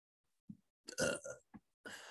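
A few short, faint vocal sounds from a person with no clear words: a blip about half a second in, a longer sound about a second in, and another near the end.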